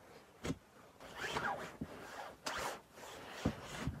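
A snow shovel digging into deep snow: several crunching scrapes of the blade and a few short thuds as snow is scooped.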